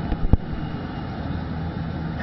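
A sharp knock about a third of a second in, then steady rumbling background noise picked up through the speaker's podium microphone during a pause in the speech.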